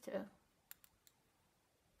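Two faint short clicks a fraction of a second apart, a little under a second in; otherwise near silence after a single spoken word.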